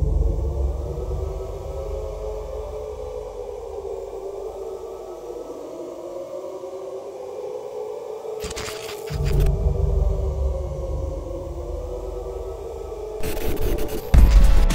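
Eerie ambient drone of wavering moaning tones over a deep rumble, broken by a short burst of static hiss about eight and a half seconds in and by static again shortly before the end.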